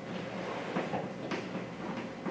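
Chalk writing on a blackboard: a few faint, irregular taps and scrapes as symbols are marked in.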